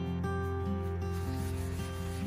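A damp paper towel rubbed back and forth over a wooden floor, the rubbing starting about halfway through, over soft background music.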